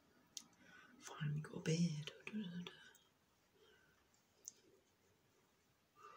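A woman's voice saying a few words about a second in, then low room sound with a couple of sharp small clicks.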